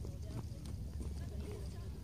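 Footsteps walking along a paved path, with faint voices of people nearby and a low, uneven rumble on the phone microphone.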